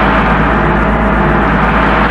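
A loud, steady, crash-like din with a deep hum underneath, filling every pitch evenly.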